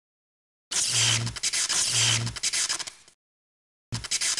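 Sound effects for an animated logo intro: a loud, hissy, scratchy rush with a low hum under it twice, about a second apart, fading out around three seconds in, then a shorter burst starting just before the end.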